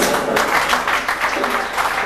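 Audience applauding, breaking out about a third of a second in, with music playing underneath.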